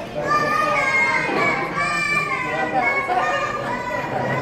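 Young boys talking and exclaiming in high-pitched voices.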